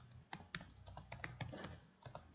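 Computer keyboard typing: a quick run of faint keystrokes, several a second.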